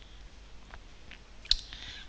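Computer mouse clicking: a couple of faint clicks, then one sharp, loud click about a second and a half in.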